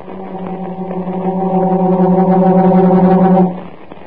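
A low sustained droning tone, one steady note with a slight pulse, swelling in loudness for about three and a half seconds and then cutting off suddenly.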